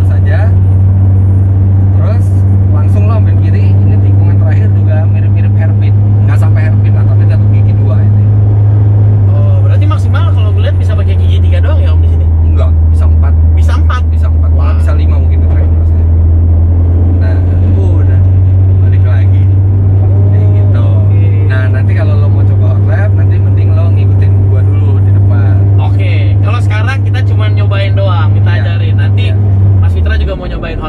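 Car engine and road noise heard from inside the cabin during a circuit run: a loud, steady low drone with faint voices beneath it, cutting off at the end.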